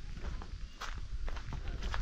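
A person's footsteps walking over grassy ground: a string of soft, irregular steps.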